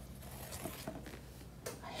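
Faint rolling of a tennis ball down a cardboard ramp and across a hard tile floor, with a few light ticks, over a low steady room hum.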